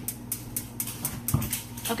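Gas stove burner igniter clicking rapidly, about five sharp clicks a second, as the burner is lit. A low thump comes a little past midway, over a steady low hum.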